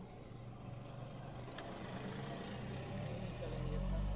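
A motor vehicle's engine running on the road, faint at first and growing gradually louder toward the end.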